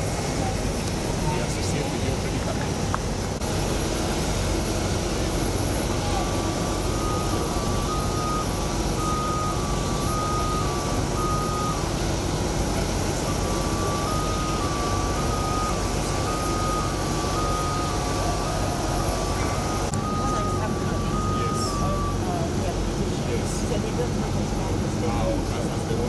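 Steady, loud engine noise on an airport apron. From about six seconds in to about twenty-two seconds, with a short break near twelve seconds, an electronic warning beeper alternates between two close tones.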